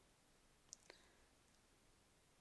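Near silence with two faint clicks close together a little under a second in: keystrokes on a computer keyboard as digits are typed.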